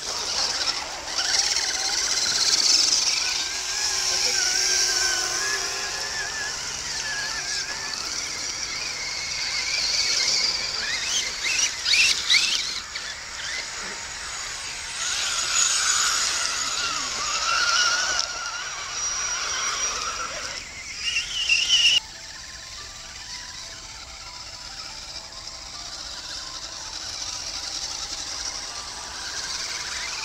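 Electric motors and gearboxes of radio-controlled scale crawler trucks whining as they drive through mud, the pitch wavering up and down with the throttle. About 22 seconds in the sound drops abruptly to a quieter, steadier whine.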